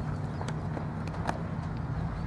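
A few light, sharp taps from softball infield fielding practice on a dirt field, over a steady low hum; the clearest come about half a second and just over a second in.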